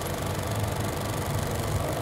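Car engine idling, a steady low rumble with hiss heard from inside the cabin.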